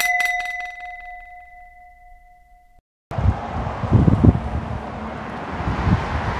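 A bright electronic ding rings out and fades, with two steady tones and a quick flutter at first, then cuts off suddenly near the three-second mark. After a brief silence, outdoor background noise with low rumbling thumps follows.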